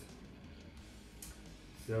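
A pause that is mostly quiet room tone, with a few faint clicks from gloved hands handling the vac motor's wires and a replacement thermal fuse. A man's voice begins right at the end.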